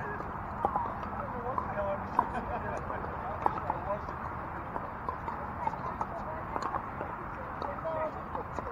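Pickleball paddles popping the hard plastic ball across several courts, in irregular sharp pops, the loudest about two seconds in, over a background of distant players' chatter.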